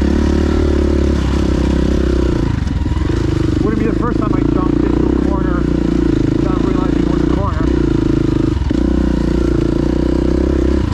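KTM 350 EXC-F dirt bike's single-cylinder four-stroke engine running steadily while ridden, its note dipping briefly three times, about two and a half seconds in, again past seven seconds and once more near the end.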